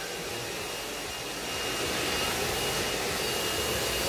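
A hair dryer running steadily: an even blowing rush with a faint high whine, growing a little louder about a second and a half in.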